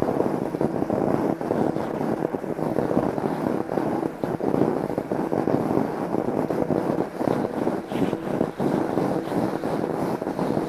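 Fat bike's wide tyres rolling and crunching steadily over snow on a frozen lake, a continuous grainy crunch that starts just before and runs without a break.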